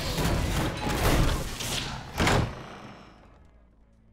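Film-trailer sound effects: a run of heavy thuds and crashes, ending in a loud slam a little over two seconds in, then fading away.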